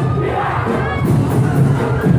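Drum-heavy Sinulog street-dance music with a crowd shouting over it. Several voices rise in pitch about half a second in.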